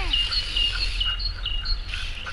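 A bird calling: short high chirps, several a second, alternating between two pitches, over a steady low rumble.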